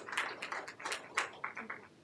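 Scattered applause from a small audience, individual claps audible, thinning out near the end.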